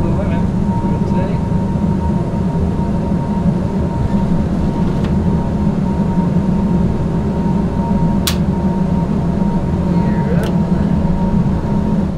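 Airbus A220 flight simulator's sound system playing steady simulated engine and airflow rumble during the takeoff climb, with a thin constant tone above it. Two short clicks sound in the second half.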